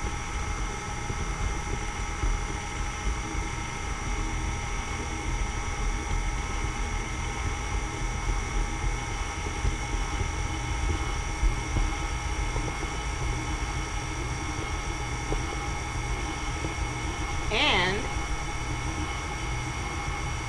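Electric stand mixer motor running at a steady speed, its flat beater creaming butter and sugar in a stainless steel bowl.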